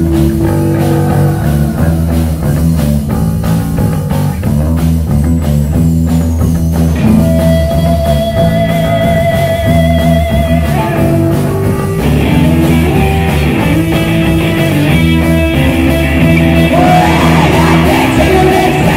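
Live rock band playing loudly: electric guitars, bass and drum kit. A single high guitar note is held for a few seconds midway, then the full band comes back in brighter.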